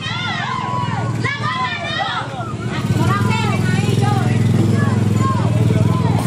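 Raised, excited voices in the street over a small motorcycle engine running, which grows louder about three seconds in as it comes close.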